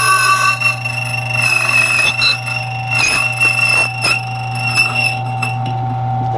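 Silca Speed 044 key duplicator's motor running and its cutter whining as it cuts a Schlage SC1 key blank while the carriage is rolled along the original key. The whine holds several steady high pitches over a low hum, dipping briefly with a few sharp clicks about three and four seconds in.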